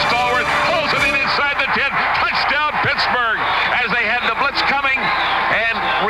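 Speech only: a man's voice calling a football play, play-by-play.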